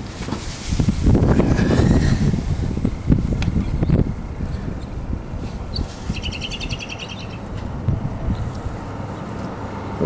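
Low rumbling and rustling handling noise, loudest in the first few seconds, with a bird's short rapid trill of high chirps about six seconds in.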